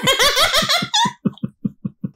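A woman laughing heartily: a loud run of high laughs for about a second, then short breathy pulses that trail off.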